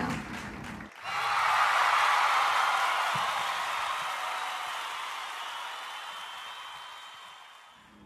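Applause and cheering, starting suddenly about a second in and fading out slowly.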